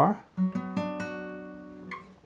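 Nylon-string classical guitar: a B minor barre chord strummed about half a second in and left ringing, fading away.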